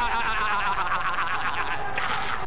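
A man's drawn-out, high, wavering wail, the tail of a played sound clip in which he cries out 'No, God! No, God!'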